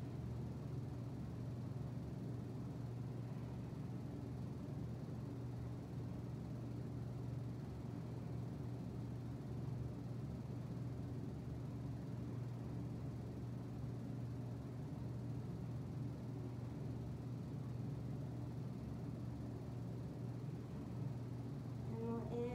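Steady low hum under a faint, even hiss: room tone, with nothing else happening.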